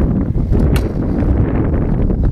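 Wind buffeting the microphone with a steady low rumble. There is a single short, sharp click about three quarters of a second in.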